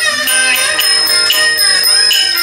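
Shaanxi shadow-play (Wanwanqiang) ensemble music: a small struck bronze bell rings on a steady beat over a melody that slides in pitch.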